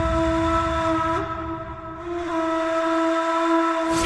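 A single long, steady note held in the suspense background score, a clear whistle-like tone with a slight step in pitch about a second in.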